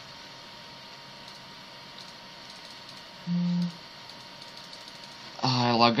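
Steady faint background hiss of a home recording, with a short hummed "mm" from a man about three seconds in; his speech starts near the end.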